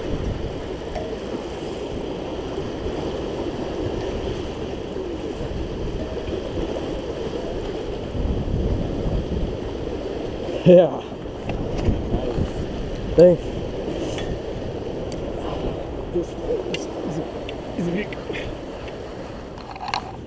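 Wind buffeting the microphone over rushing, churning water, with a couple of short shouts about eleven and thirteen seconds in.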